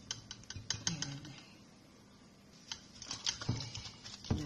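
Small irregular clicks and taps from hands handling raw fish in a bowl, in two clusters with a quiet stretch between.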